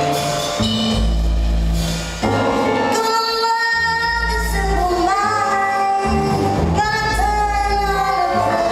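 A big band playing live, with a woman singing long held notes that slide in pitch over a deep bass line that changes note about once a second.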